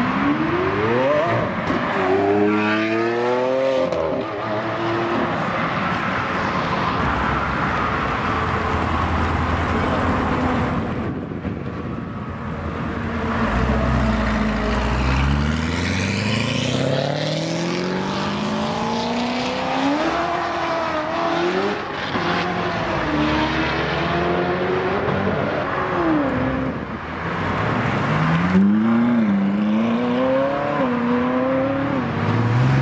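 A string of supercars, among them a Lamborghini Aventador, a C7 Corvette Z06 and a Ferrari 458, accelerating hard past one after another. Each engine note climbs in pitch, drops at a quick upshift and climbs again, with a deep low rumble about halfway through.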